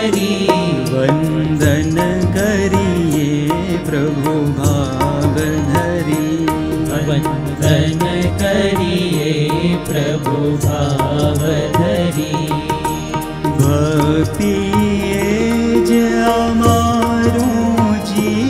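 Devotional bhajan: a male voice singing a wavering melody over a steady harmonium and tabla strokes.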